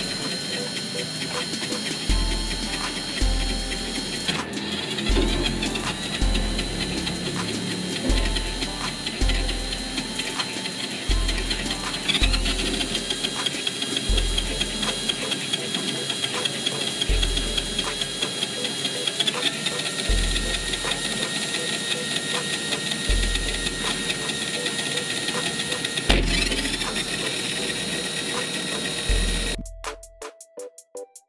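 Geared DC motor driven by an L298N motor driver, running with a steady high whine that glides up about a third of the way in and changes pitch again about two-thirds in and near the end as its speed and direction are switched. A regular low beat of background music, about one thump a second, runs underneath.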